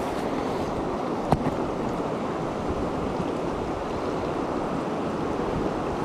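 Shallow river water running over a stony bed, a steady rush; one short sharp click about a second in.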